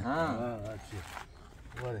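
A person speaking in short phrases, one at the start and one near the end, with quieter outdoor noise between.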